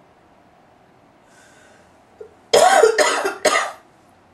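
A woman coughs three times in quick succession, starting about two and a half seconds in.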